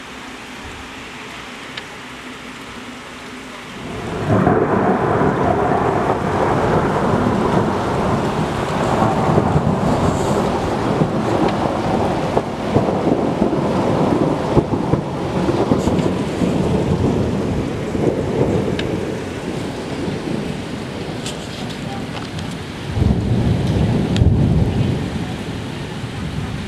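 Steady rain falling on the street, then about four seconds in a long roll of thunder breaks in loudly and rumbles on for many seconds before easing, with a second loud rumble near the end.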